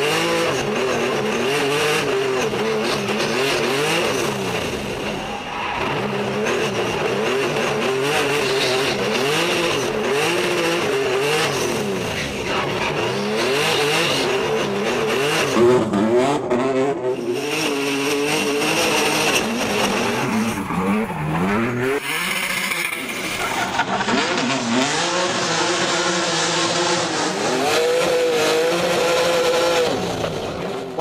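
Race car's engine revving up and down again and again as it drifts sideways up a mountain road, with tyres squealing. The sound changes abruptly a little past the two-thirds mark as the footage cuts.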